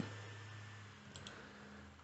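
Faint computer mouse clicks, two quick soft clicks about a second in, over low room hiss and a faint steady hum.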